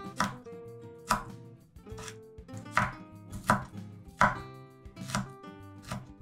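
Chef's knife chopping garlic cloves on a wooden cutting board: six sharp knocks of the blade against the board at uneven intervals, roughly one a second.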